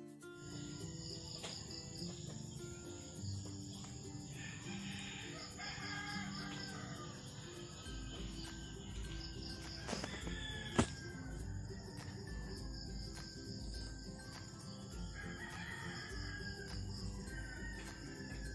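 A rooster crowing twice, over quiet background music, with a single sharp click a little past the middle.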